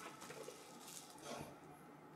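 Faint rustling of paper and packing material being handled, a little louder just after a second in.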